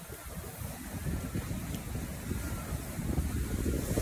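Wind buffeting the microphone in an uneven low rumble that grows about a second in, over the wash of lake waves on a rocky shore.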